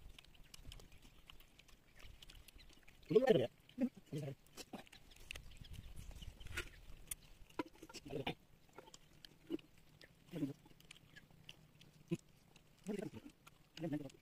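Quiet eating sounds from people eating rice and chicken with their hands: scattered soft smacking and chewing clicks. A few brief murmured words break in, the loudest about three seconds in.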